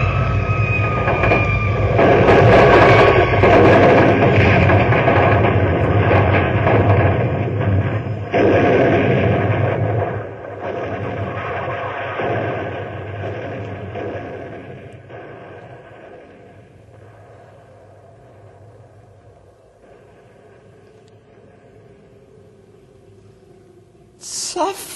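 Radio-drama sound effect of a rocket crashing down: a falling whistle at the start runs into a loud rumbling roar lasting about ten seconds. The roar drops off in steps and slowly fades to a low steady drone, with no explosion, since the warhead does not go off.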